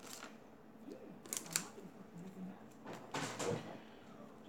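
Handling noise of small items such as plastic pens: light clicks and rustles, with sharper clicks about a second and a half in and again around three seconds in.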